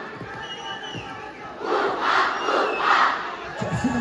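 A large crowd of spectators shouting and cheering as a kabaddi raid is under way, the noise swelling in a few waves in the second half.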